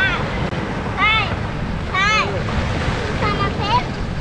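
Wind buffeting the microphone over the wash of sea surf, with short high-pitched arching calls repeating about once a second.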